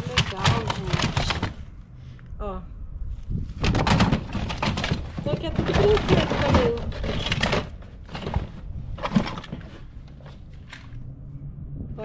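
Plastic toys clattering and rustling against each other and against a cardboard box as hands rummage through it, in two busy bouts separated by a short pause, then quieter scattered clicks with one sharp knock near the end.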